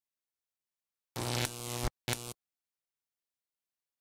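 Record label logo sting: a glitchy burst of static-like noise over a low buzzing tone about a second in, lasting under a second, followed by a shorter second burst.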